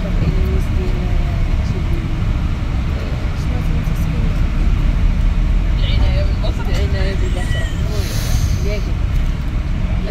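Steady low rumble of a double-decker bus's engine and road noise heard from the upper deck while it drives along, with indistinct voices of passengers talking. A short hiss of air about eight seconds in.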